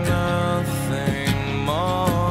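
Music: a slow rock song with drums, and a held melody note that slides up in pitch near the end.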